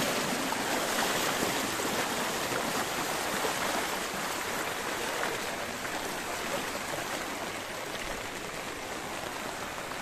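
Floodwater rushing across a street: a steady rush of flowing water that grows slightly fainter toward the end.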